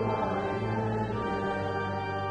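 A congregation singing a hymn verse with organ accompaniment, in long held chords.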